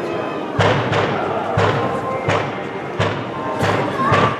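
Fireworks bursting overhead: about five loud bangs, roughly a second apart, each trailing a long echo off the surrounding buildings.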